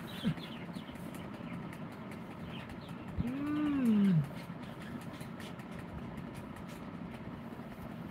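A single hummed 'hmm' from a person's voice, rising then falling in pitch over about a second, a few seconds in, over steady low background noise.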